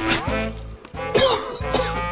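Background music, with a man coughing and sputtering after spitting out a mouthful of drink.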